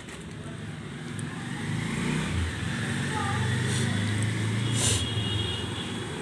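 A motor vehicle engine running and drawing closer, its low hum growing steadily louder over several seconds.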